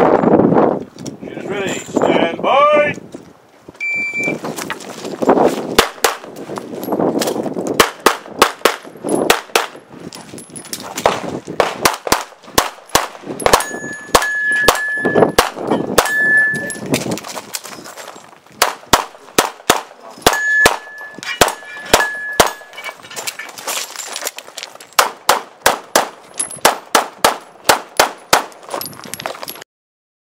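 A shot timer's short start beep, then a pistol fired dozens of times in fast strings with short pauses between them. Steel targets ring now and then when hit.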